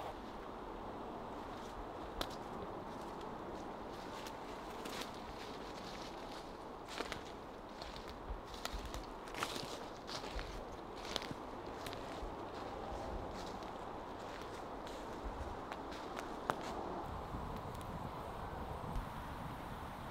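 Faint woodland ambience over a steady low hiss, with scattered light snaps and rustles that come most thickly in the middle.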